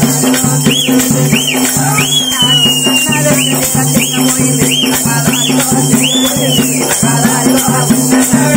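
Telangana Oggu Katha folk dance music: a fast, even rhythm of jingling rattle percussion over a steady low drone, with a high melody of short rising-and-falling notes, one held longer about two seconds in.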